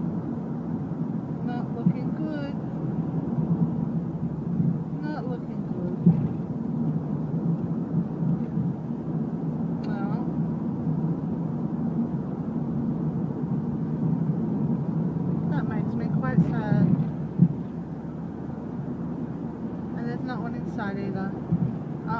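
Steady low rumble of a car's engine and tyres on the road, heard from inside the moving car, with brief faint snatches of voice now and then.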